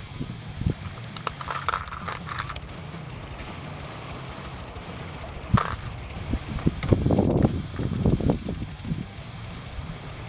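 Plastic clicks and rattles from a hand rummaging through an open clear plastic tackle box of small lead jig heads, with a sharp click about five and a half seconds in, over a low steady wind rumble.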